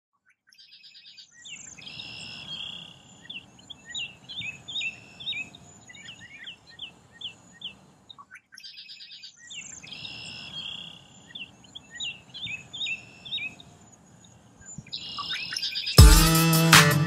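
Several birds chirping and trilling over a faint, steady outdoor background. The same stretch of birdsong plays twice, with a brief gap about eight seconds in.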